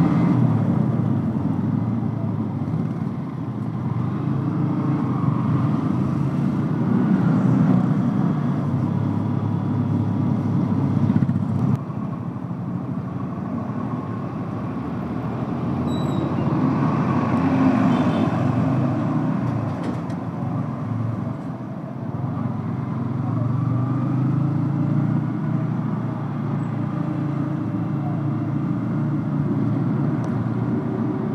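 Motorcycle engine running while the bike is ridden, with road and wind noise. Its pitch rises and falls a few times with the throttle.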